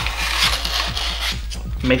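A scrap of foam board being scraped and rubbed along a foam-board fuselage seam, wiping off excess hot glue: a soft, continuous scraping that eases off about a second and a half in. Background music plays underneath.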